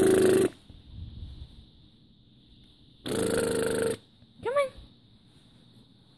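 A young baby girl vocalizing: two loud, harsh, buzzy squawks, one right at the start lasting about half a second and one about three seconds in lasting just under a second, then a short coo that rises and falls in pitch. These are the raspberries, coos and screeches she has just learned to make.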